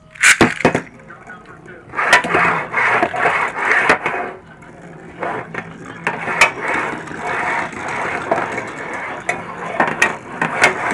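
A Beyblade launched onto a tabletop, with a sharp burst near the start, then the top spinning and scraping across the table surface.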